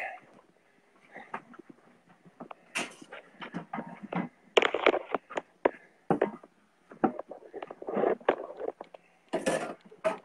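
Irregular knocks and clatter of a plate and cutlery being set down on a table, with handling bumps in between; the loudest clatters come about halfway through and near the end.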